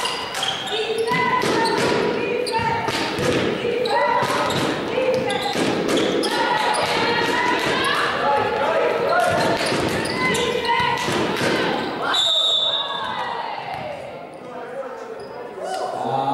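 Basketball game play in a sports hall: the ball bouncing, with short high squeaks and calls echoing around the hall. A short, high, steady whistle blast comes about twelve seconds in, and things go quieter after it.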